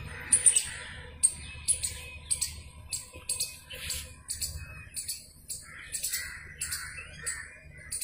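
Birds chirping: a steady run of short, sharp, high chirps, about three a second, with softer, lower calls joining in the second half.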